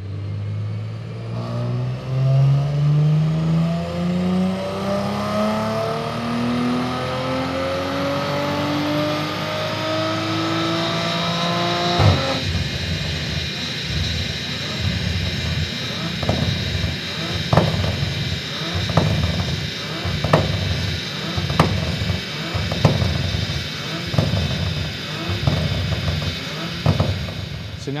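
Audi RS4 B9's 2.9-litre twin-turbo V6, fitted with TTE720 hybrid turbochargers, pulling at full throttle on a chassis dyno, its note rising steadily for about twelve seconds. It cuts off suddenly as the throttle closes, then winds down with irregular sharp pops.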